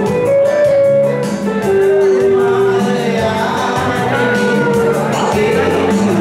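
A man singing live, holding long notes, over a Yamaha keyboard accompaniment with a steady programmed drum beat.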